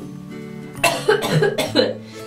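A woman coughing in a short run of several quick coughs starting about a second in, over steady background music.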